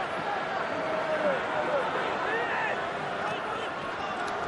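Rugby stadium crowd: a steady din of many voices, with single shouts rising above it here and there.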